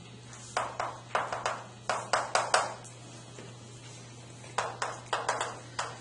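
Chalk tapping and scraping on a chalkboard while writing: a quick run of short, sharp strokes, a pause of about a second and a half, then another run near the end.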